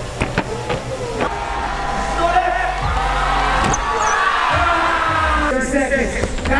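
A loose BMX bike clattering onto the ramp deck, a few sharp knocks in the first second, over continuous voices and crowd noise.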